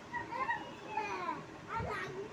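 A young child's voice making short vocal sounds that rise and fall in pitch.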